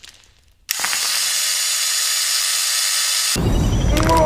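Motorised mechanical leg brace whirring as it powers up, starting suddenly under a second in as a steady high mechanical whine. A deep low rumble joins it a little past three seconds.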